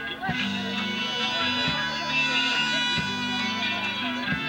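Live band playing: electric guitar with horns over drums keeping a steady beat.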